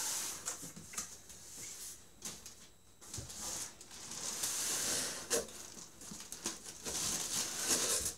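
Large cardboard PC-case box being handled: the cardboard rustles and scrapes as it is shifted on the table and reached into. The scraping comes in several hissy bouts, with a few light knocks between them.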